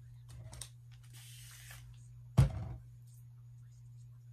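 Handling noise from hands working locs and pipe cleaners: a soft rustle, then a brief hiss about a second in, then a single loud thump just past halfway. A steady low hum runs underneath.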